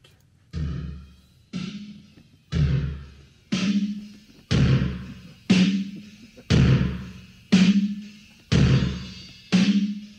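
Isolated multitrack drum recording played back over studio monitors, its kick, snare and toms distorted through a SansAmp: heavy hits about once a second, each with a long, decaying distortion tail.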